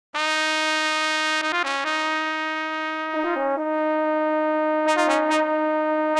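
Notation-software (Finale) playback of a brass-quintet arrangement of a porro, using sampled brass sounds. Held chords from the trumpet, trombone and baritone voices move to a new chord about every second and a half, with no tuba bass yet.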